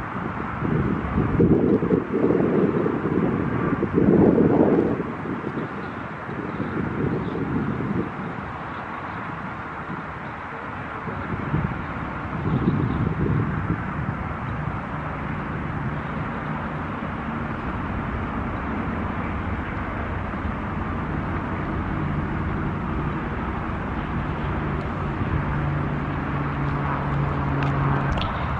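Wind buffeting the microphone in gusts, heaviest in the first five seconds, with a low steady hum like a vehicle engine building toward the end.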